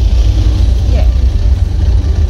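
A steady low rumble, with a woman's brief spoken "yeah" about a second in.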